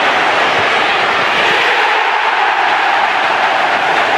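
A loud, steady rushing noise, like a whoosh or jet-wind sound effect, with no tone or beat, accompanying an animated channel logo sting.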